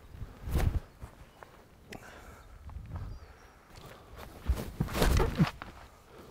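Footfalls and body movement of two disc golf drives thrown from a tee pad: a short thump of a planted step about half a second in, then a second thrower's quicker run-up steps and plant, heavier, from about four and a half to five and a half seconds.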